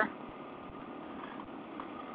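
Suzuki DR-Z400 motorcycle's single-cylinder four-stroke engine running steadily at cruising speed on a gravel road, heard faint and muffled, with no changes in pitch.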